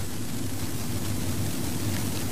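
Steady background noise with a low hum, without distinct events.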